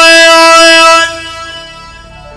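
A loud held note on a reedy, horn-like melody instrument in Middle Eastern folk music, steady in pitch. It stops about a second in and its echo fades out.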